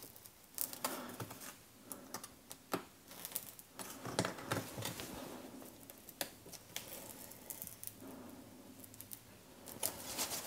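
Scalpel blade cutting and scratching through thin foam packing sheet around a plastic part, with faint, irregular scratches, small clicks and rustling of the sheet.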